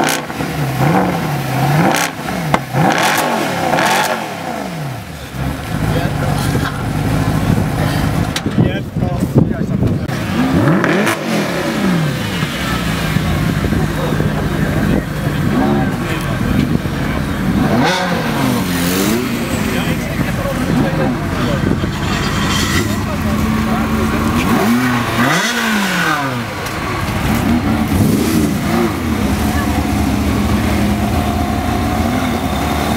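Mercedes-Benz SLS AMG 6.2-litre V8 idling and revved in short blips again and again, each rev a quick rise and fall in pitch before settling back to idle, heard close to the exhaust.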